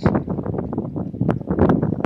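Wind buffeting the camera's microphone, a low rumbling haze broken by irregular crackles and knocks.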